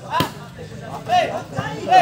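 A ball struck once by a player, a single sharp smack just after the start, among crowd voices and shouts.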